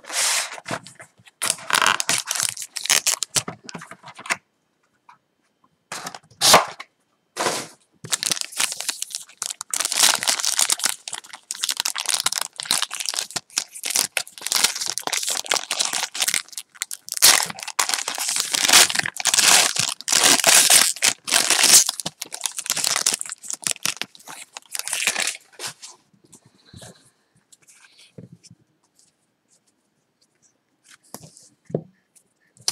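Packaging torn open by hand: a trading-card box is opened and its foil pack wrapper is ripped and crinkled. There are bursts of tearing and crinkling at first, then a long run of crinkling foil that dies away a few seconds before the end.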